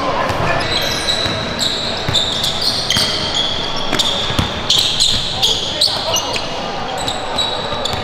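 Basketball dribbled on a hardwood gym floor, with many short, high sneaker squeaks as players cut and change direction.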